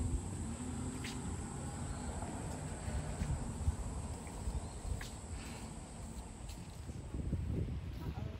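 Rainforest ambience: a steady high-pitched insect drone over a low rumble, with a few faint clicks.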